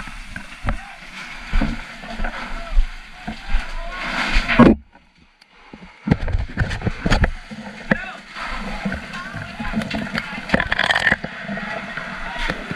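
Firefighters' voices calling out over knocks and clatter of gear and splashing water. About five seconds in, the sound cuts out abruptly for about a second, then the voices and knocks resume.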